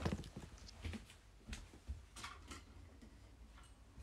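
Scattered knocks, taps and rustles of a smartphone being handled close to its microphone, with a sharp knock at the very start and a few softer clicks after it.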